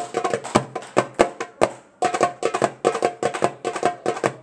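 Hand frame drum played by hand: a quick rhythm of sharp, ringing strikes, with a short break about halfway through.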